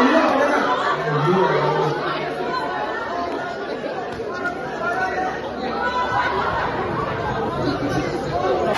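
A crowd of students chattering, many voices talking over one another with the echo of a large hall.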